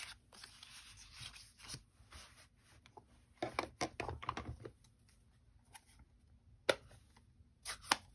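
Paper tags being handled and laid out on a paper towel: faint paper rustling and light taps, busiest around the middle, with one sharper click later on.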